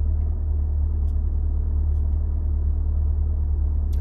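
Steady low rumble of a car's idling engine, heard from inside the cabin.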